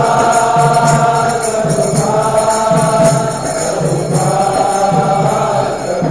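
Devotional kirtan: voices chanting in long held phrases over a steady beat.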